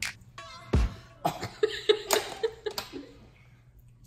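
A man coughing and gagging: one sharp cough a little under a second in, then a run of short, choked retching sounds that die away near the end. It is a gag reflex at the taste of a food.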